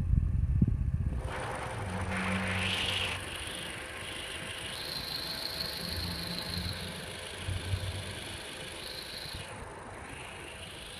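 A steady engine hum with a faint high whine. In the first second there is a heavy low rumble, and between about two and three seconds in a hiss rises and fades.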